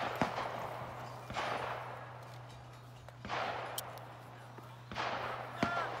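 AK-pattern rifle fired at a distance during a match stage: four single shots about one and a half to two seconds apart, each trailing off in an echo.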